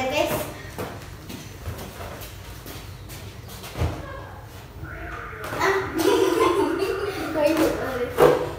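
Children's voices speaking, quiet at first and loudest in the last two seconds, with a single soft thump about four seconds in.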